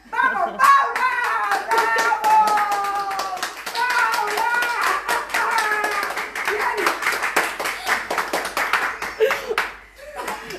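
Hands clapping in a steady rhythm while a woman's and a girl's voices sing along in long held notes.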